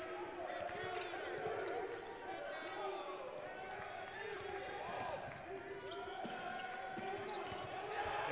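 Basketball being dribbled on the hardwood court in live play, amid a steady background of many overlapping voices from players and spectators.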